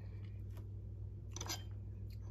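Quiet room tone with a steady low hum, and one brief faint sound about one and a half seconds in.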